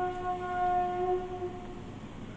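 Azan, the Islamic call to prayer, sung by a muezzin: one long held melodic note that ends near the end.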